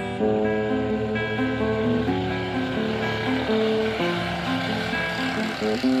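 Acoustic guitar played by hand, a picked run of single notes and chords changing every fraction of a second.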